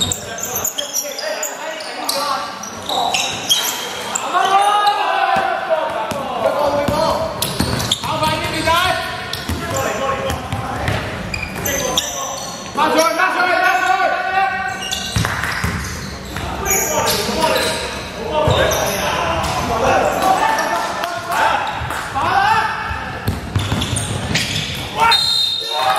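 Basketball game in a large gym: the ball bouncing on the wooden court again and again, with players calling out to each other, all ringing in the hall.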